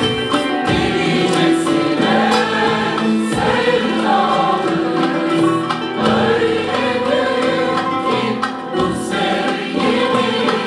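A mixed choir singing Turkish art music with an ensemble of plucked string instruments and hand drums, the voices holding long notes over steady percussion strokes.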